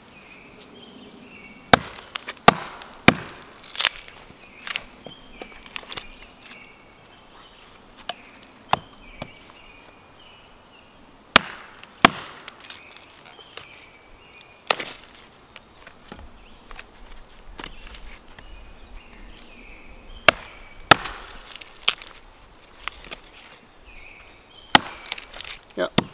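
Gränsfors Bruk Outdoor Axe contact splitting small sticks against a log: sharp wooden knocks as axe and stick are struck down together and the wood splits. The knocks come irregularly in small groups, with pauses between.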